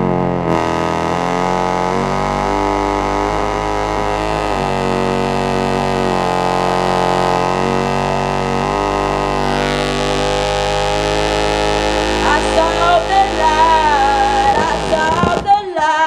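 Electronic backing music holding a dense, steady chord of layered tones. A woman's voice starts singing over it about three-quarters of the way through.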